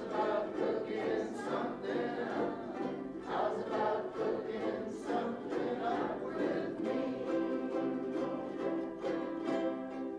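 Ukulele ensemble strumming chords together in a steady rhythm, with a group of voices singing along.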